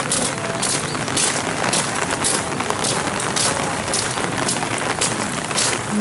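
Footsteps crunching on wet gravel at a walking pace, about two steps a second, over the steady hiss of falling rain.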